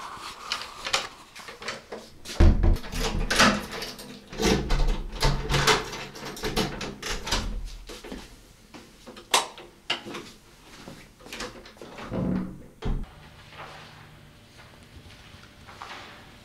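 Doors being opened and shut by hand, with clicks and knocks from the handles and latches and a heavy thump about two and a half seconds in; quieter near the end.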